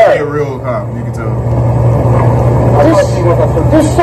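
Several people talking, half-heard, over the steady low hum of a running vehicle engine.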